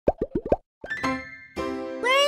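Intro logo jingle: four quick rising pops, then a short upward swoop into a bright, held musical chord.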